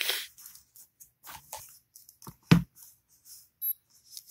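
Handling noises as a small digital scale is brought out and set down on a rubber mat: soft rustles and light clicks, with one solid thump about two and a half seconds in. A faint short electronic beep near the end as the scale is switched on.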